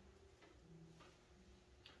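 Near silence: room tone in a pause between speech.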